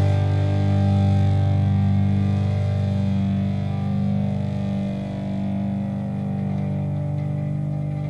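Distorted electric guitar, with bass under it, holding a final punk rock chord that rings out and slowly fades, its brightness dying away over the last few seconds.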